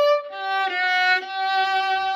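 Solo violin, bowed: a note played with the third finger on the A string (D), then straight across to the third finger on the D string for a lower G. The G is held with two short breaks in the bow about half a second and a second in.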